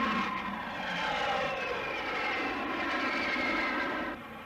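Hawker Hunter jet fighter's Rolls-Royce Avon turbojet running at high power on takeoff: a loud, steady jet noise with a whine that slowly falls in pitch.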